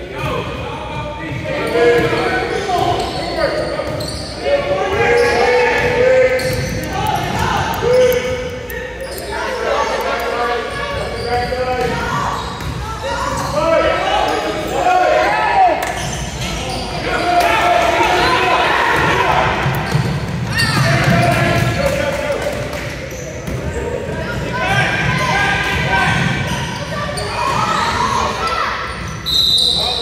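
A basketball bouncing on a hardwood gym floor during play, with voices of players and spectators throughout, echoing in a large gym. A brief high tone sounds near the end.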